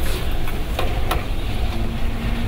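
Steady lecture-hall background noise, a low rumble with hiss, broken by a few short clicks.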